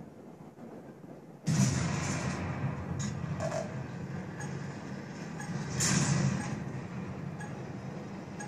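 A steady rumbling hiss from a running machine starts suddenly about a second and a half in, swells briefly near six seconds, then eases off.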